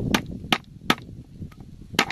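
Large kitchen knife chopping eel on a wooden cutting board: three sharp knocks in the first second, then another at the end.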